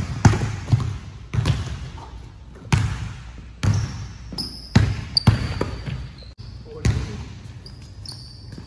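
Basketballs being dribbled on a hardwood gym floor: sharp, irregular bounces, roughly one a second, echoing in the large hall.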